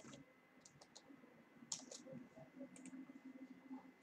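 Faint, irregular clicking at a computer, in small clusters of two or three clicks, over near silence.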